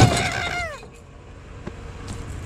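A ceiling fan dropped into a pickup truck bed: a sudden loud clatter right at the start, followed by a falling tone that dies away within a second.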